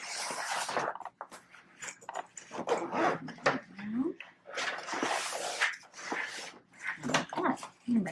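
A zipper being pulled around the end of a nylon carry bag in several short rasps, with the fabric rustling as the flap is opened.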